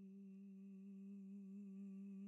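A voice humming one long, faint note at a steady pitch.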